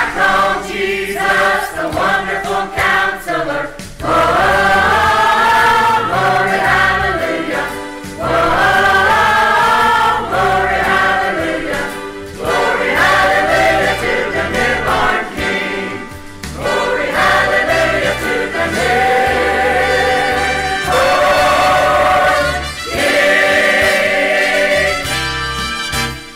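Church choir singing an upbeat gospel Christmas song in sustained phrases of about four seconds, over a bass line accompaniment.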